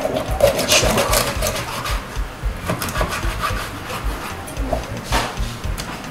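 Large kitchen knife sawing and cutting through a raw catfish against a hard board, a run of uneven strokes.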